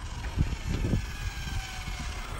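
Faint whine of an Arrma Limitless RC drag car's X-Spec 2900kv brushless motor and drivetrain as the car is driven back slowly, the pitch sagging slightly, over a low steady rumble.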